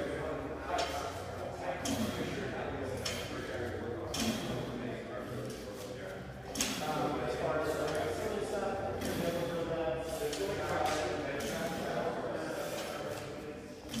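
Indistinct voices echoing in a large gym hall, broken by a few short clanks from a loaded barbell's plates as the lifter cleans it.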